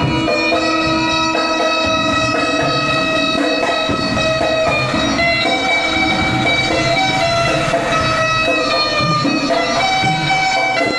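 Bulbul tarang, the Indian keyed zither with metal strings, playing a melody of sustained, ringing notes with a constant buzzing, drone-like tone.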